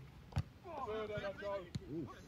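Footballers' voices calling out across the pitch during play, with a sharp knock just under half a second in and a smaller one near the end.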